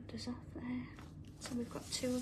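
A person's voice speaking softly, close to a whisper, in short broken fragments.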